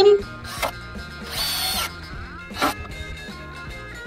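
A cordless drill runs in one short burst of about half a second, driving a screw into wood, with a couple of sharp knocks before and after it, over background music.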